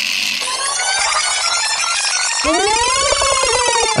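Electronic radio jingle: a busy run of short synth tones, then, a little past halfway, a layered sweep of tones that rises quickly and then slowly falls.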